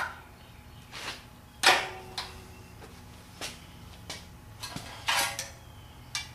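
Metal hand tools and engine parts clicking and clinking as the distributor drive gear is worked into an air-cooled VW 1600 engine case: a handful of separate sharp clicks, the loudest nearly two seconds in, and a short rattle about five seconds in.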